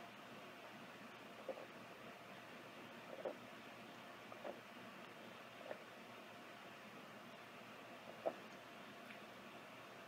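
A person drinking from a mug: about five faint gulps spaced a second or more apart, over near silence.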